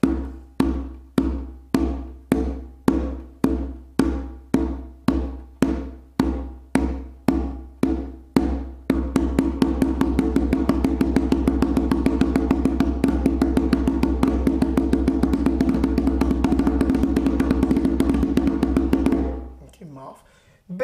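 Conga played with muffed tones: the fingertips press into the head as the hand strikes, damping the open tone. Evenly spaced strokes about two a second for roughly nine seconds, then a fast continuous run of strokes that stops about a second before the end.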